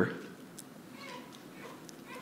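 Quiet hall room tone in a pause in a man's speech, the end of his last word fading into the room's echo at the start.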